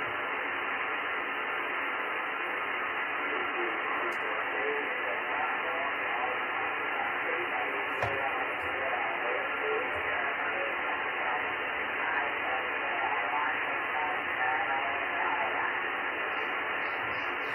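Amateur radio transceiver receiving single-sideband through the RS-44 satellite: steady receiver hiss, cut off above the narrow voice passband, with faint, garbled snatches of distant voices coming and going in the noise. A single click sounds about halfway through.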